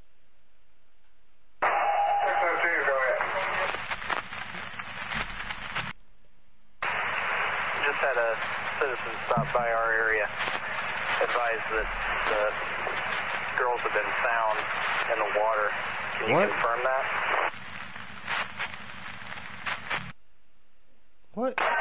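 Police scanner radio traffic: voices over a hissing, narrow-sounding radio channel. Two transmissions each start and stop abruptly: the first comes about a second and a half in and opens with a short tone, and the second runs from about seven seconds in until near the end.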